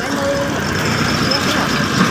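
A vehicle engine running steadily, with people talking over it.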